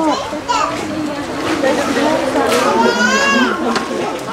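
Children's voices and chatter from onlookers, several at once, with one high-pitched child's call rising and falling about three seconds in.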